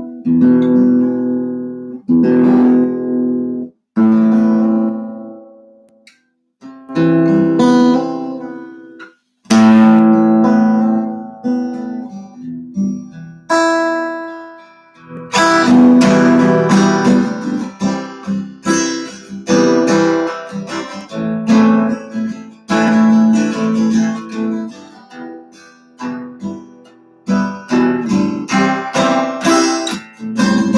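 Stretton Payne D1 acoustic guitar, fitted with a piezo pickup and played through an amplifier, being strummed: single chords left to ring with short breaks over the first half, then steady continuous strumming from about halfway.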